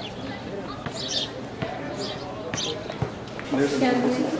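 Indistinct voices of a group of people, with a few short sharp knocks about one and a half, two and a half and three seconds in.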